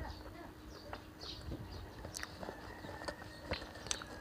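Quiet eating and handling sounds: faint mouth sounds of chewing with scattered small clicks from a plastic shake cup and its straw being stirred, over a low steady hum.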